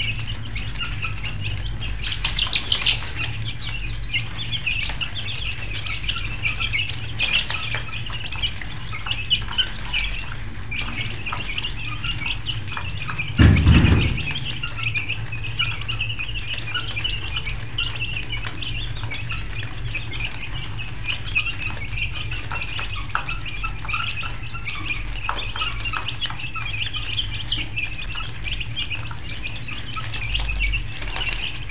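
A flock of birds chirping densely and without pause over a low steady hum, with one dull thump about halfway through.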